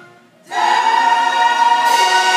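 Musical-theatre ensemble singing a loud held chord with the pit orchestra. It comes in about half a second in, after a brief hush.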